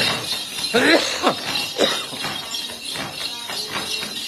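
Shaken bundle of small ritual bells (Then xóc nhạc) jingling in repeated strokes. A voice makes a few short rising-and-falling calls about a second in.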